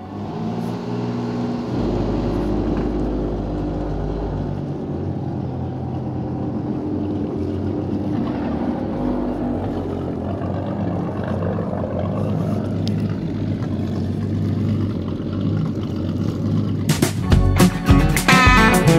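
The 1956 Chris-Craft Sea Skiff 22's inboard engine running steadily at idle out of the water, fed cooling water by a hose, with its wet exhaust spitting water out at the stern. Guitar music comes back near the end.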